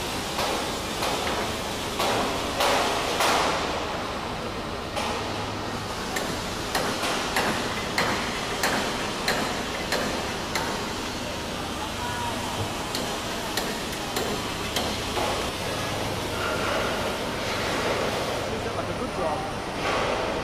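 Steel pallet racking being erected: irregular metal clanks and knocks, several a second through the middle of the stretch, over a steady background noise in a large steel-clad hall.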